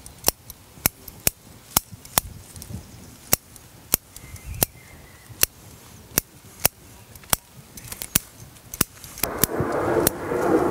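Bonsai pruning scissors snipping twigs and shoots off a Japanese maple: about fifteen short, crisp cuts at an uneven pace, one or two a second. A louder rushing noise comes up near the end.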